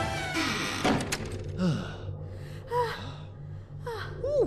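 Music fades out, and just before a second in a door thuds shut. A low, evenly pulsing hum follows, with short swooping sound effects over it.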